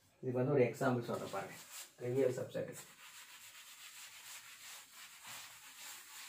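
A man talks for a couple of seconds, then a cloth rubs chalk off a blackboard in repeated wiping strokes from about three seconds in.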